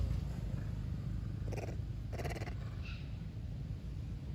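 Two short, pulsing calls from a long-tailed macaque, about a second and a half in and again just after two seconds, with a faint third call soon after, over a steady low rumble.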